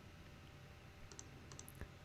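A few faint computer mouse clicks in the second half, against near-silent room tone, as a menu is opened.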